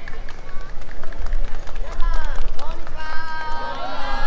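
Outdoor crowd sound just after a brass band's number: scattered clapping and sharp clicks over a low rumble, with voices calling out. About three seconds in, several voices hold long calls together.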